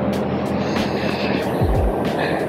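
Background hip-hop track: the melody drops out and deep, falling kick-drum hits carry on over a steady rushing noise.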